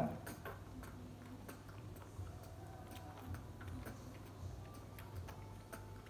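Baby monkey suckling milk from a baby bottle's teat: faint, soft sucking clicks repeating fairly evenly, roughly every half second or more, over a low steady hum.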